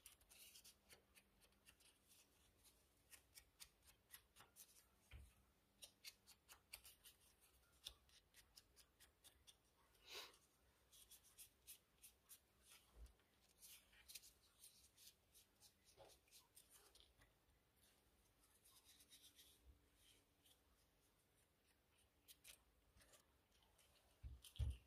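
Very faint, irregular light taps and paper rustles: a small ink blending tool dabbed onto paper and paper tags being handled on a desk.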